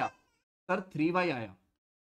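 A man's short spoken utterance of two syllables with the pitch rising then falling, starting just over half a second in.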